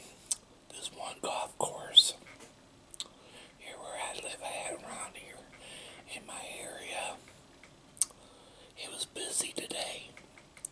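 Close-miked chewing of a ham and egg sandwich: wet mouth noises with sharp clicks and crackly bits, the loudest a sharp crack about two seconds in. In the middle comes a stretch of low, mumbled voice.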